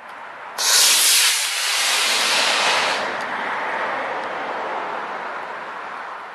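Estes black-powder model rocket motor igniting at launch: a loud rushing hiss that starts about half a second in, stays loud for about two and a half seconds, then fades slowly as the rocket climbs away.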